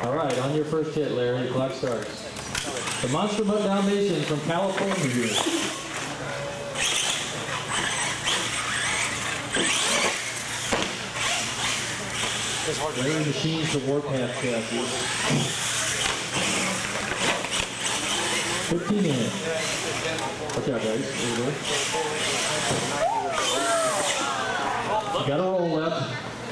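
Electric motor and gearing of an R/C monster truck whining as it revs up and down while it drives and jumps on a concrete floor.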